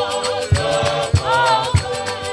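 Choir singing a gospel hymn in harmony over a steady drum beat, a little under two beats a second.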